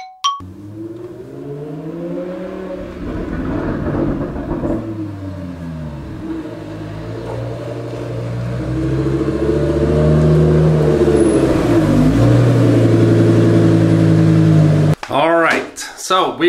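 Audi R8 V10 Plus's 5.2-litre V10 engine running as the car drives up and pulls into the garage. Its note rises and falls several times and grows louder in the second half, then cuts off suddenly a second before the end.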